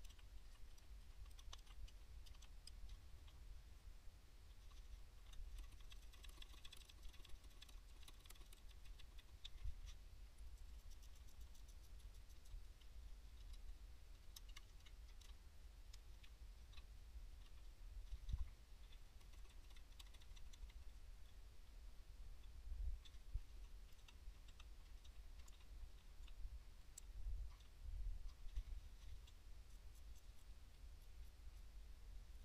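Faint, scattered clicks and light metallic taps of hand tools working the bolts on a turbocharger housing, denser a few seconds in, with a few dull bumps later on.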